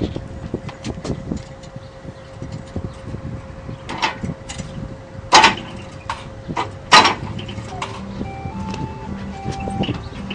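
Knocks and clunks as someone handles and climbs onto a coin-operated kiddie carousel ride, over a steady hum. The two loudest knocks come at about five and a half and seven seconds. About eight seconds in, the ride starts and plays a simple electronic tune of single notes.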